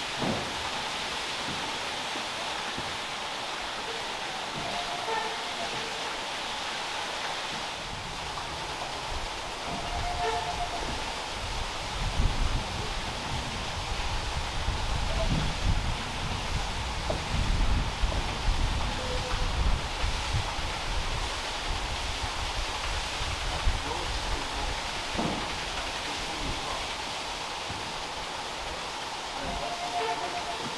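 Water rushing and splashing from the turning Great Laxey Wheel, a steady hiss, with an uneven low rumble building for several seconds in the middle.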